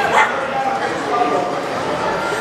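Young girls' voices, high-pitched and excited: a short rising squeal at the start, then held, unclear vocal sounds.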